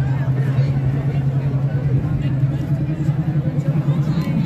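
Busy pedestrian street ambience: crowd chatter over a steady low hum.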